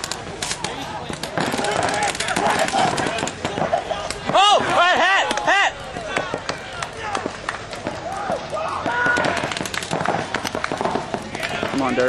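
Stock-class pump paintball markers firing in a steady scatter of sharp pops across the field during a point. Near the middle comes a quick run of loud shouts.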